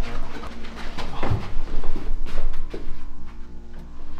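Low, steady suspense-music drone, with a few sharp knocks early and a heavier thump about a second in as a door is opened and people move through it.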